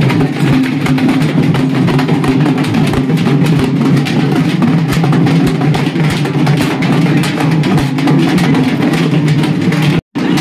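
Several large hand-held double-headed drums beaten together in a fast, dense rhythm of many quick strikes. The drumming cuts off abruptly at the end.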